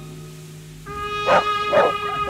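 Background music with held tones; about a second in, a dog barks twice, about half a second apart, while jumping up in play.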